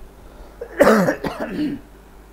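A man coughs once, sharply, about a second in, with a short voiced throat-clearing tail after it.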